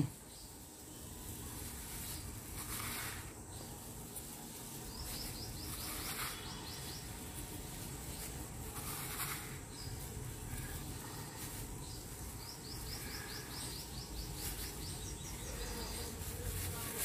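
Faint rustle and clatter of cut raw mango pieces being worked with salt in a steel bowl by a gloved hand. A bird's rapid trill of repeated high notes comes in the background twice, about a third of the way in and again near the end.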